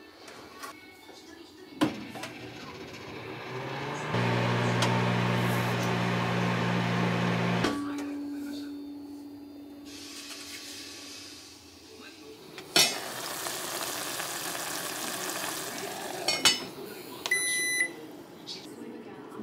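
A microwave oven clicks shut, then hums steadily while heating for a few seconds, and its door clunks loudly later on. Near the end comes a short electronic beep from an induction cooktop's touch button being pressed.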